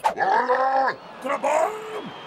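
Wordless cartoon vocal sounds: one drawn-out cry that rises and falls, a shorter one after a pause, and a brief falling note near the end.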